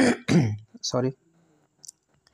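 A man clearing his throat: two rough bursts in the first half-second.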